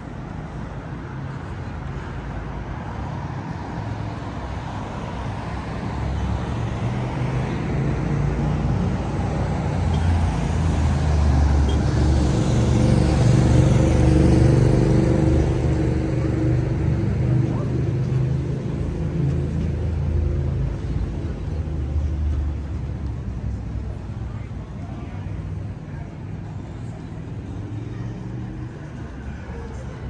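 Downtown street traffic: a motor vehicle's engine passes close, building to its loudest about halfway through and fading away over the next ten seconds, over a steady wash of road noise.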